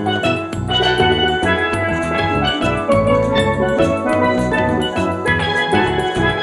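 Carousel band-organ music: a melody over organ chords, with drums keeping a steady beat.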